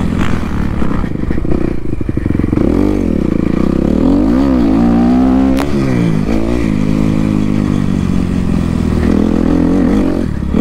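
Dirt bike engine being ridden hard, heard close up, its pitch climbing and dropping again and again with throttle and gear changes, choppy for a moment early on. A single sharp tick sounds a little past halfway.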